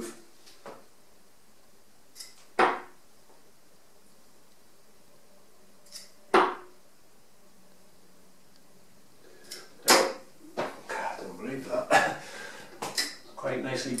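Three 23 g tungsten steel-tip darts (Harrows Dave Chisnall) thrown one after another, each landing in the dartboard with a sharp thud, about three and a half seconds apart. After the third, a run of smaller clicks and knocks.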